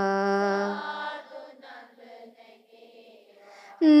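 A solo voice chanting a Sinhala Buddhist wandana verse: it holds the last note of a line for about a second, then fades into a quiet pause, and the next line starts just before the end.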